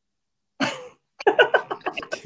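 A single short cough about half a second in, then laughing and voices. The sound cuts to dead silence between them, as a video call's audio does.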